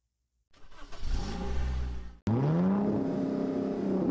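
Car engine sound effect: a low engine rumble comes in about half a second in. After an abrupt cut just past two seconds, the engine revs up with a quickly rising pitch and holds as the car pulls away.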